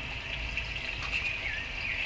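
A few short, falling bird chirps over a steady high-pitched background hiss and a low rumble.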